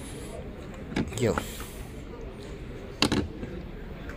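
Electrically operated charging-port flap on an Audi e-tron GT's front wing being opened: a short motor whir, then a sharp click about three seconds in.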